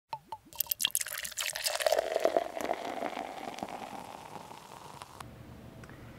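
Beer being poured into a glass, its pitch rising as the glass fills, after a few sharp clicks at the start; the pour dies away toward the end.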